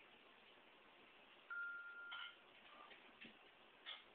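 A single short electronic beep, one steady tone held for under a second, about one and a half seconds in, followed by a few faint clicks in a near-silent room.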